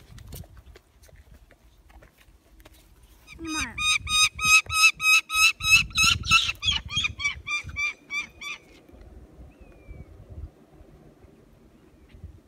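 A bird of prey calling in a rapid series of sharp, repeated notes, about four a second, for some five seconds beginning a few seconds in. Low handling and wind noise runs underneath.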